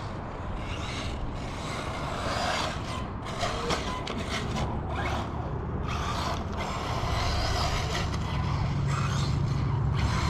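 Kyosho MP9e electric 1/8 buggy running on a dirt track: its brushless motor and drivetrain whine, rising and falling in pitch with the throttle, with gear noise. A low drone grows louder over the last few seconds.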